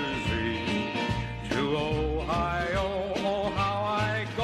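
A recorded country-style song: a male singer with guitar accompaniment.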